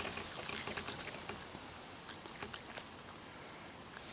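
A raccoon chewing food close to the microphone: faint wet smacking with scattered small clicks, thinning out after about two and a half seconds.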